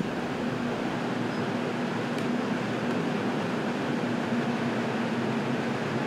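Steady rushing of ventilation fans blowing air, with a low steady hum beneath it and one faint tick about two seconds in.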